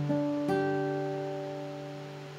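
Acoustic guitar playing the song's final notes: two last notes picked near the start over a held chord, which then rings out and slowly fades.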